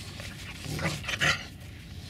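Tibetan mastiff puppy right at the microphone making two short vocal sounds in quick succession about a second in.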